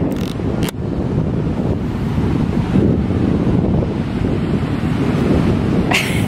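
Wind buffeting the camera microphone in a dense, steady rumble, with ocean surf underneath. Two short sharp snaps in the first second.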